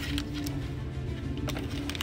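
Background music with a steady held note over a low bass. A few short clicks and rustles come from foil booster packs being handled and taken out of a cardboard box.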